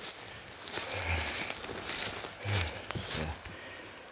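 Footsteps in dry leaf litter on a forest floor, faint irregular rustles and crunches, with a short quiet spoken "yeah" a little past halfway.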